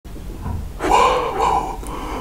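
A man's short, high-pitched vocal noise, drawn out for about a second, starting just under a second in.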